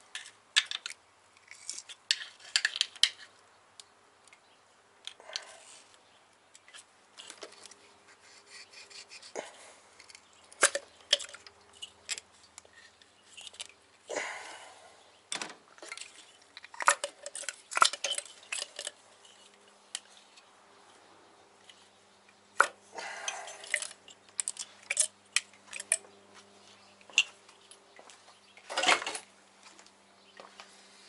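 Hand tools and engine parts clinking and clicking as ignition coil packs and their connectors are pulled off the valve cover of a VW 1.8T four-cylinder: irregular sharp metallic clicks with a few short rattles.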